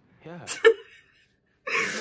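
A woman's stifled, breathy laugh behind her hand, one short burst near the end, after a brief spoken "yeah" at the start.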